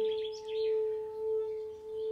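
Tibetan singing bowl ringing with one long sustained tone that slowly swells and fades in a wavering pulse.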